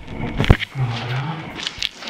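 Shuffling and scraping of people moving crouched through a low, gritty cellar passage, with a single sharp thump about half a second in and a couple of small scuffs near the end.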